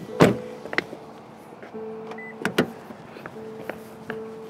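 A parked car's door opening and shutting as someone gets out: a loud thud just after the start, then sharper knocks about halfway, over a steady low hum.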